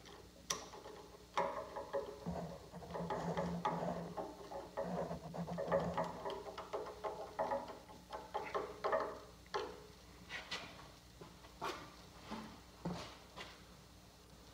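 Metal-on-metal handling of a dial-indicator bracket as it is slid onto a drill press quill and clamped in place: scattered light clicks and knocks, with faint squeaky rubbing through the first half.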